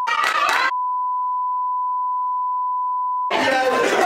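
A steady single-pitched bleep tone of the kind edited in to censor, with all other sound cut out beneath it, broken about a tenth of a second in by a short burst of a group shouting and laughing. The bleep then holds for about two and a half seconds before the group's shouting and laughter comes back near the end.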